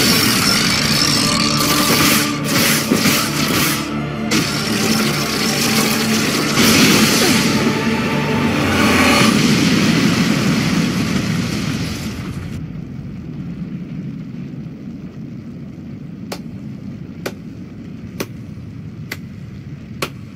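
Cartoon sound effect of a huge blast: a loud, dense rush and rumble that dies down about twelve seconds in to a low rumble, with light ticks about once a second near the end.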